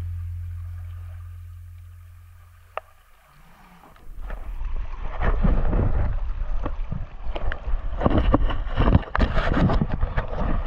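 Background music fading out, then, from about four seconds in, river water rushing and splashing close to the microphone, with irregular knocks and bumps from handling.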